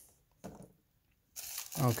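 Mostly near silence, with a faint click about half a second in and then a short crinkle of plastic bubble wrap being handled inside a metal lunchbox.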